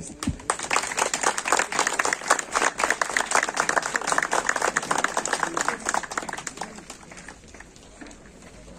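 Audience applause, a dense round of clapping that starts just after the call for it and dies away over the last couple of seconds.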